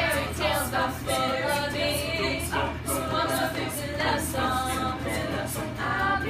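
Mixed-voice school choir singing a cappella in harmony, with no instruments.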